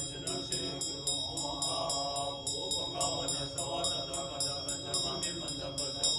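Tibetan Buddhist monks chanting a mantra in low voices, with a hand bell (drilbu) shaken in a rapid even ringing, about five strokes a second.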